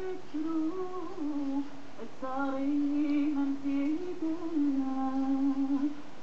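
A woman singing solo and unaccompanied, holding long notes with small ornamented turns between them, heard through a television's speaker.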